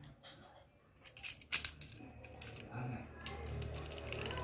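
Small sharp clicks and taps of a die-cast toy excavator being handled, its plastic boom and bucket arm swung at the joints, the loudest click about one and a half seconds in. A low steady hum comes in about halfway.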